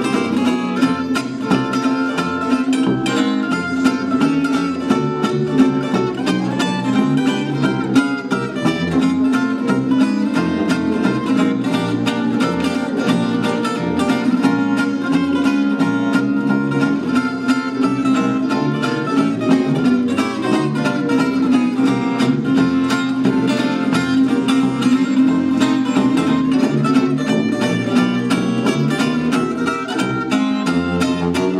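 An acoustic jazz guitar takes a solo of quick picked lines, with a bass saxophone holding down the bass line underneath.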